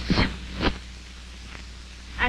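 Worn film soundtrack hiss with a steady low hum, broken by one short, sharp noise about two-thirds of a second in.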